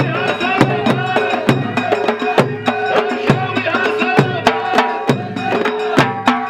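Loud live folk music: sharp percussion strikes about three a second over drumming, with a chorus of voices singing.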